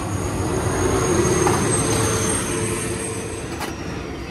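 A road vehicle passing close by: a steady rumbling noise with a droning hum that swells and then fades over a few seconds. There is a short click near the end.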